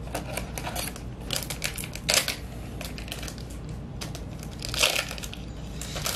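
Crinkling and tearing of a trading-card booster pack wrapper as it is opened, in several short bursts of crackling.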